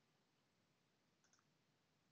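Near silence: faint room tone, with one very faint click just over a second in.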